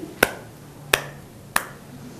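Three sharp finger snaps, evenly spaced about two-thirds of a second apart.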